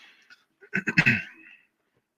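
A man laughing briefly: a breathy start, then a short burst of quick chuckles about half a second in that fades out by the middle.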